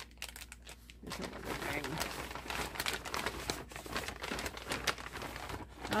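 Plastic packaging bag crinkling and rustling as it is handled and opened, with many irregular sharp crackles starting about a second in.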